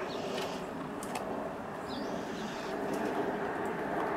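Quiet outdoor background: a steady, even hiss with a few faint clicks and one faint short bird chirp about two seconds in.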